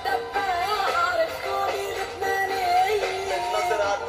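A singer's voice over band accompaniment, singing a song in Arabic into a microphone with long held, bending notes.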